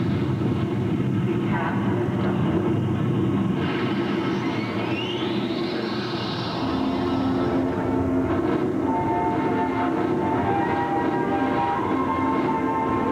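Soundtrack of the Fremont Street Experience overhead light show played over the street's loudspeakers. A dense low sound effect has a rising sweep about four seconds in, then gives way to held musical notes in the second half.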